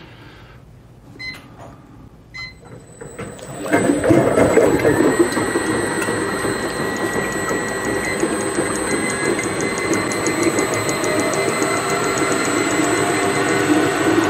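Emery Thompson batch ice cream freezer being switched on: a couple of short beeps from its control panel, then about four seconds in the motor and dasher start and run steadily.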